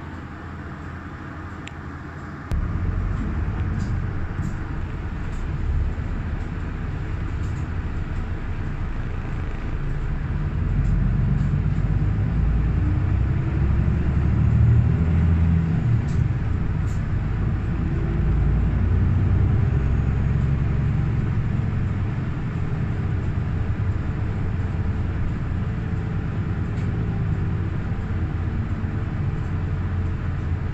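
Bus engine and road noise heard from inside the cabin as the bus pulls away. It jumps up suddenly about two and a half seconds in, then grows louder with a faint rising whine as the bus gathers speed, and settles to a steady run.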